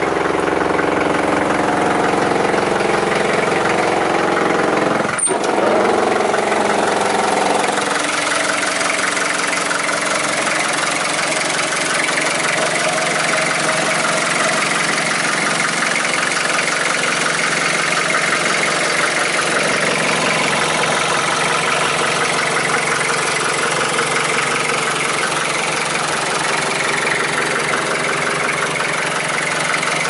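Land Rover 88 Series III four-cylinder engine idling steadily, with a brief sharp sound about five seconds in.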